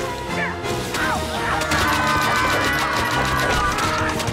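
A rapid barrage of splats and smacks as thrown objects pelt a man and a log cabin wall, over a music score.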